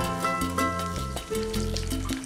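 Battered fish sizzling and crackling in hot frying oil, with background music of held notes over it.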